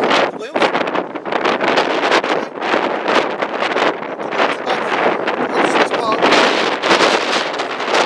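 Wind buffeting the camera's microphone: a loud, gusty rushing that rises and falls in strength.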